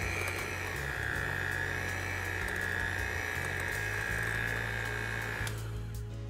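Cuisinart electric hand mixer running with a steady high whine as its beaters whip softened butter and honey. It switches off about five and a half seconds in. Background music plays underneath.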